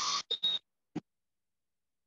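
A short noisy rustle and two brief bursts through a video-call microphone in the first half second, then a single click at about one second, after which the audio drops to dead digital silence as the call's noise gate cuts in.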